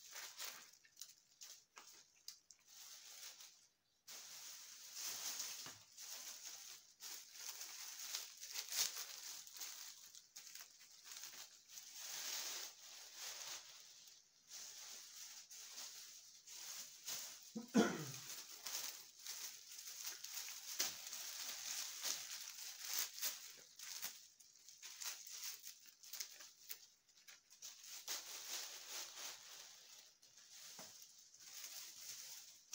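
Birch branches rustling as they are handled and laid out on a table, in irregular leafy swishes; a brief falling sound a little over halfway through is the loudest.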